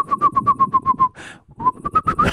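A person whistling an imitation of birdsong, shaping it with a hand at the mouth into a rapid warble of about ten chirps a second. The warble breaks off about a second in, and a short rising whistle follows near the end.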